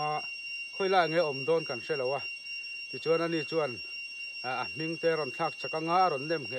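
A man talking in several animated stretches with short pauses between them, over a thin, steady, high-pitched whine that runs without a break.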